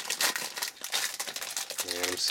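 Foil wrapper of a 2012 Topps Tribute baseball card pack crinkling and rustling in the hands as it is peeled open, a rapid run of small crackles.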